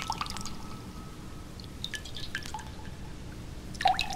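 Sparse, irregular water-drop plinks in a quiet passage of ambient electronic music, over a faint held tone that fades out in the first second and a half. A louder cluster of drops comes just before the end.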